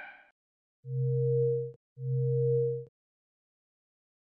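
Two steady electronic tones, each just under a second long and a short moment apart, both low-pitched with a fainter higher tone above, and each cut off with a small click: a synthesized sound effect, one tone for each branch of the graph as it is drawn.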